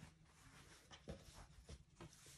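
Near silence: room tone with a few faint, brief rustles of quilting fabric being handled and smoothed on a cutting mat.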